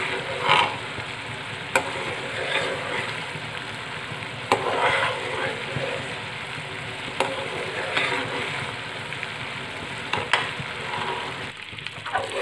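Sugar syrup boiling and bubbling in a metal kadhai while a metal ladle stirs it, scraping through the pan with a few sharp clinks against the metal. The syrup is cooking down into a thick chashni.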